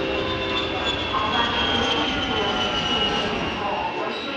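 Outdoor airport ambience: a steady low rumble with a high engine whine that slowly falls in pitch.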